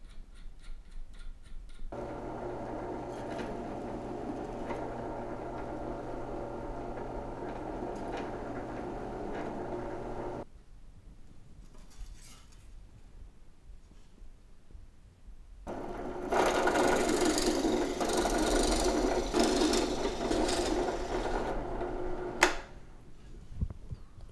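Benchtop drill press motor running steadily for about eight seconds, then stopping. After a pause it runs again, louder and rougher, for about seven seconds and ends with a sharp click. With the depth stop set, it is taking shallow cuts for LED recesses in a wooden jig.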